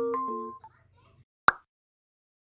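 The last notes of soft background music dying away, then a single short pop sound effect about one and a half seconds in, followed by silence.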